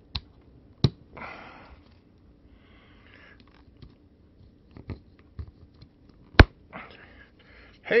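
AA batteries being pressed into a plastic spring-contact battery holder: a series of sharp clicks, the loudest about six seconds in. Short sniffs through the nose fall between the clicks.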